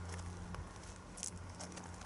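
Faint footsteps and handling noise from a camera being carried, with a few light ticks about a second in, over a low steady rumble.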